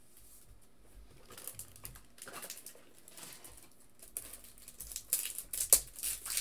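Light rustling and clicking of trading cards and their plastic sleeves and holders being handled. The clicks come faster in the last two seconds, with one sharper click just before the end.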